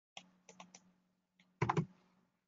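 Typing on a computer keyboard: a few light keystrokes in the first second, then a louder cluster of about three keys near the end.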